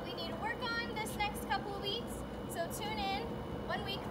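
A young heeler (Australian cattle dog) whining, a string of short, high, wavering cries repeated every fraction of a second.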